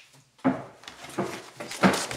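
Papers being handled and set down on a table, with two sharp knocks, about half a second in and near the end.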